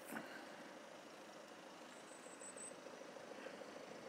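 Faint outdoor background noise with a low, faint engine hum that takes on a steady pulsing pattern from about halfway through, and a brief faint high-pitched tone about two seconds in.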